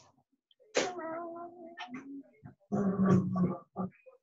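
Drawn-out cries of a household animal: a long, held call starting about a second in, a lower one about three seconds in, and a short one near the end.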